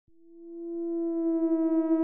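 A single sustained electronic tone at one steady pitch, fading in over about the first second and then held, its overtones filling out as it grows louder.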